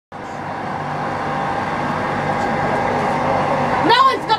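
Steady interior noise of a Transperth electric suburban train carriage: an even rumble with faint steady humming tones, slowly growing a little louder. A voice starts just at the end.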